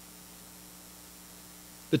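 Faint, steady electrical hum with light hiss in a pause between spoken words.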